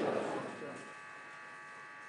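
Many voices answering together, a murmur that fades out about half a second in, over a steady electrical buzz that carries on under quiet room tone.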